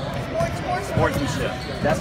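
Basketballs bouncing on a parquet gym floor, with voices talking over them.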